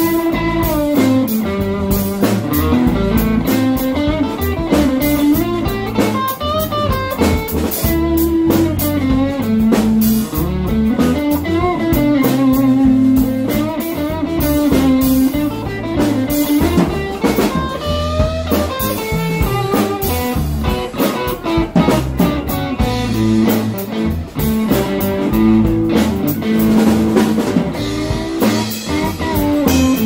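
Live blues-rock band's instrumental break: an electric guitar plays a lead line with notes that bend up and down, over electric bass and a drum kit.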